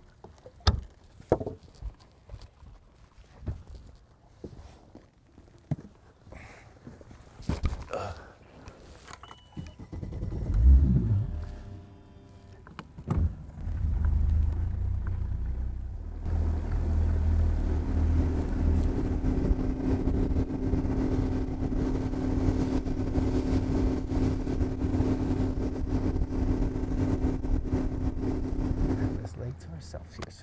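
Bass boat's outboard motor running under way: a steady drone that settles in about halfway through and drops away just before the end. Before it come scattered knocks and a loud low rumble.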